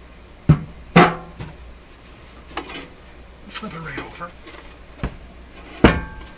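Several knocks and bumps from the metal chassis of a Stark Model 10-A RF signal generator as it is turned over and set down on a workbench, some with a short ring. There are two close together in the first second, then a quieter stretch, and the loudest knock comes just before the end.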